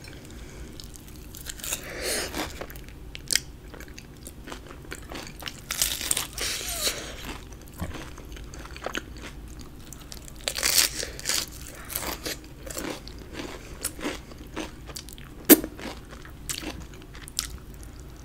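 Close-miked bites and chewing of crispy fried chicken with cheese sauce: crunching of the breaded crust comes in irregular clusters, with one especially sharp crunch late on.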